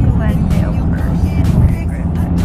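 Steady low rumble of a moving car heard from inside the cabin, with a woman talking over it.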